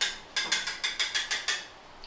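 A single sharp click, then a quick run of about eight sharp, bright clicks, roughly seven a second, that stop about a second and a half in.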